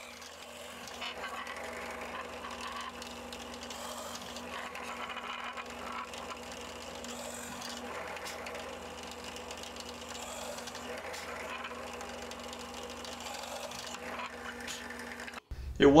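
Drill press motor running with a steady hum while the bit bores holes into a walnut board. The sound cuts off suddenly just before the end.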